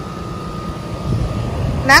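Outdoor air-conditioner condenser unit running, a steady low hum with a faint steady whine above it.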